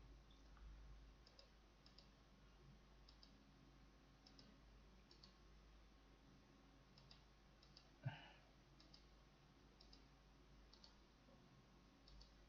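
Near silence with faint computer mouse clicks, several coming in quick pairs, and one louder knock about eight seconds in.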